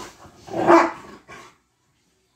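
A dog gives one loud, short bark about half a second in, while play-fighting with another dog, with softer scuffling sounds around it.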